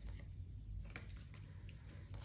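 Faint, scattered light clicks and taps of tarot cards being handled and laid down on a table, over a low room hum.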